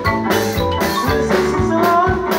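Marimba band playing live: two wooden marimbas struck with mallets carry the melody in held notes, over a drum kit keeping a steady beat of about two hits a second.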